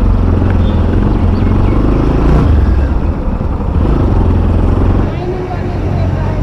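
Motorcycle engine running while being ridden, a steady low drone; it cuts off abruptly about five seconds in, giving way to quieter street sound.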